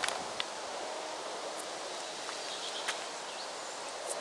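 Steady outdoor hiss of tree leaves rustling in the wind, with a few faint short clicks.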